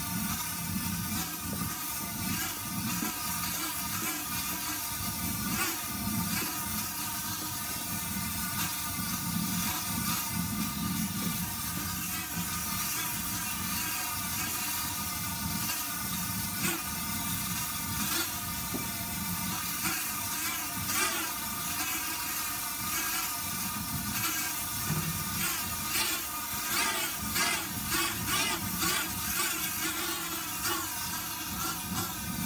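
Steady rushing of the fire heating a steelpan drum in the burning stage that tempers the pan, with a wavering hum over it that grows more uneven near the end.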